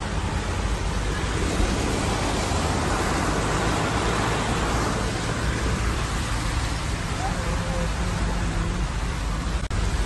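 Steady low rumble and rushing noise of a car driving along a flooded, rain-wet road, heard from inside the cabin. It breaks off briefly near the end.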